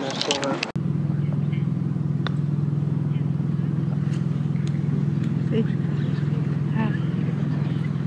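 A steady low engine hum, like a motor running at an even idle, holds from just under a second in. Faint distant voices come through it, and a faint click about two seconds in fits a putter striking a golf ball.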